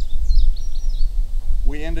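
A few quick, high bird chirps in the first second over a steady low rumble, with a man's voice coming in near the end.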